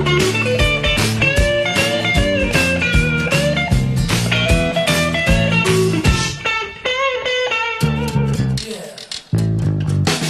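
Electric guitar solo in a 1950s rockabilly style over bass and drums. About six seconds in, the backing thins out and the guitar plays on nearly alone, then the full band comes back in sharply just before the end.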